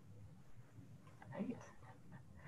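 A brief, faint voice, barely above a low steady hum: quiet murmured speech about a second in.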